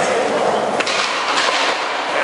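Skateboards rolling on concrete in a skatepark, with a few sharp board clacks, over a steady din of background chatter.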